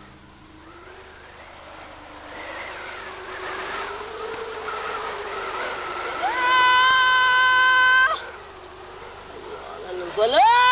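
A man's call to prayer (adhan), cried out with his hands cupped at his ears. After a quieter wavering stretch, about six seconds in the voice swoops up into one long, loud held note, kept steady for almost two seconds before breaking off. A second call swoops up in the same way right at the end.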